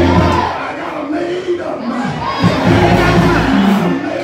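A preacher's voice shouting through the church PA, with the congregation calling out in response and an organ playing underneath.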